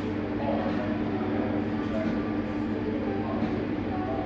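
Coffee shop ambience: a steady low hum under an indistinct murmur of distant conversation.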